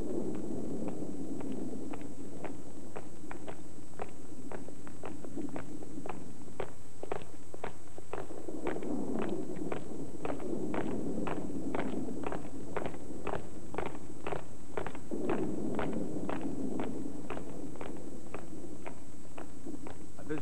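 Boots of a group of soldiers marching in step on a cobblestone street, about two steps a second, growing louder from about seven seconds in as they approach. A low wavering rumble lies beneath.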